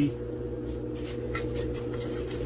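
A paintbrush stirring black paint into a can of Mod Podge: a few soft scrapes and taps of the brush against the can, over a steady background hum.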